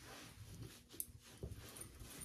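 Terry-cloth towel rubbed and pressed against the face and neck, a soft uneven rustling with a sharp tick about a second in.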